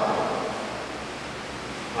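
A short pause in a man's speech through a microphone: his last word fades away over about the first second, leaving a steady hiss.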